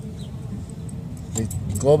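Faint light metallic clinks of small coins and a little copper piece being handled, over a steady low hum.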